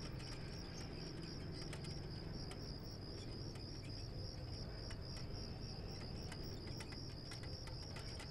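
Crickets chirping in a steady, evenly pulsing high trill, a faint night-time insect chorus.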